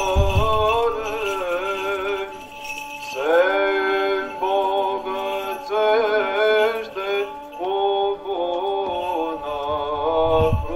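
Orthodox liturgical chant sung by several voices, phrase after phrase, with a new phrase beginning about three seconds in. Small censer bells jingle along with the chant.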